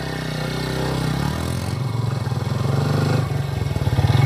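Motorcycle engine running as the bike rides up and slows, its note dropping, then idling steadily.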